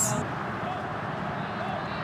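Steady background noise of a football stadium during a match broadcast, with faint distant voices calling out now and then.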